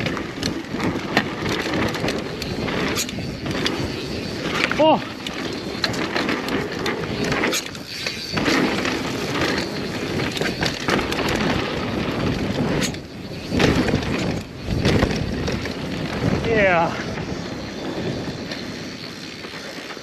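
Mountain bike ridden fast down a dirt trail: a steady rush of tyre and wind noise with frequent clatters and knocks as the bike runs over rough ground, and two brief squeals, about five seconds in and again past the middle.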